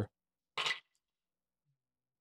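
A short clatter of dice rolled into a dice tray, about half a second in.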